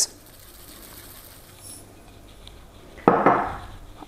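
Chia seeds being added from a small glass jar into a food processor, the jar and kitchenware handled quietly, then a louder clatter about three seconds in.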